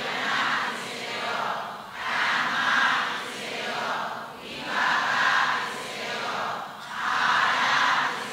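A congregation reciting a chant in unison, many voices blended together. The chant comes in phrases that swell and fall every two to three seconds.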